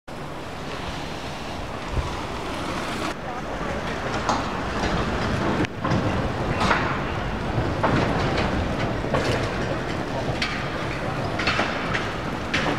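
Steady outdoor street ambience: an even rush of noise with faint, indistinct voices, changing abruptly about three and about six seconds in where the shots are cut.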